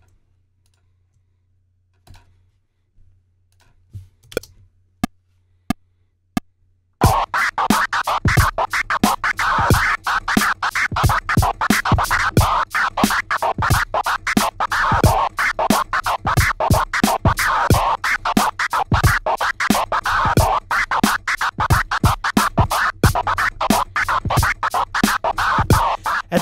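Simulated DJ vinyl scratching: a scratch sample triggered from a MIDI keyboard in the Battery sampler, with pitch bend, played over a drum loop. It starts suddenly about seven seconds in, after a few faint clicks.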